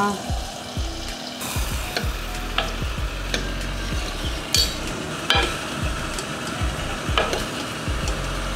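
Hot oil tempering with garlic, curry leaves and dried red chillies sizzling in dal in a pressure cooker pot, while a steel spoon stirs it in. There are several sharp clinks of the spoon against the pot.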